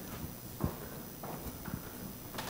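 A few soft, irregular knocks over quiet room tone, the clearest about two-thirds of a second in and another about a second and a half in.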